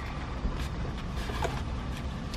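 Low steady rumble inside a car's cabin with the engine idling, with a few faint light clicks.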